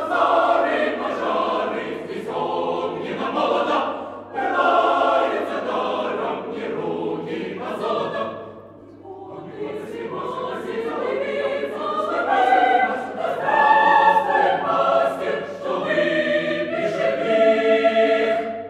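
Mixed chamber choir singing a cappella in full chords. The phrases break off briefly about four and nine seconds in, and a final chord is held near the end.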